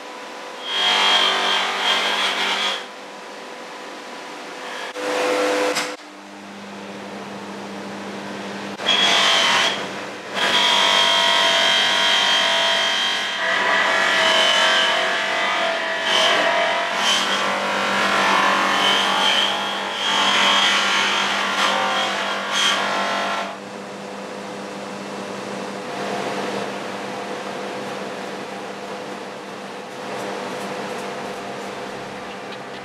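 Bench polisher motor running with its buffing mop spinning, and a stainless steel motorcycle silencer pressed against the mop in stretches of loud rubbing, the longest from about ten seconds in to about twenty-three seconds in. Between the stretches the motor hums on its own.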